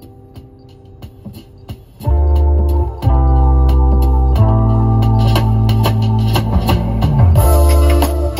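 Music playing through a truck's car audio system driven by an AudioControl LC-6.1200 six-channel amplifier, heard inside the cab. A quiet passage of held keyboard and guitar notes gives way about two seconds in to a loud, deep bass line and fuller music.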